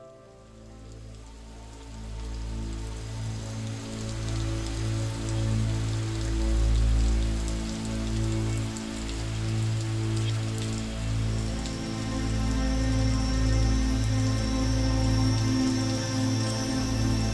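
Sound of steady rain laid under slow ambient music with long held tones; the rain swells in over the first couple of seconds.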